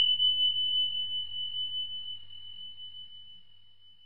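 A single high bell-like chime sound effect, struck just before and ringing out as one pure tone that slowly fades away.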